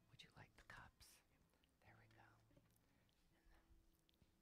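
Near silence with faint whispered voices, in short snatches, in the first second and again around two seconds in.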